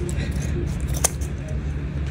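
Fabric scissors snipping into the seam allowance of thick corset fabric, with one sharp click about a second in. A steady low hum runs underneath.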